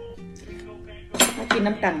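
A metal spoon clinking against a metal saucepan, a sharp clink a little after a second in, over quiet background music.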